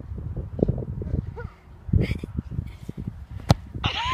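A football struck by a kick: one sharp thud about three and a half seconds in, over low wind rumble on the microphone.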